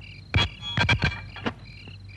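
Night ambience of insects chirping in short repeated pulses, broken by a cluster of sharp knocks, some with a brief ring, from about a third of a second to a second and a half in.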